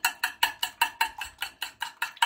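A raw egg being beaten on a plate, the utensil clinking against the plate in a fast, even rhythm of about six strokes a second, each stroke ringing briefly.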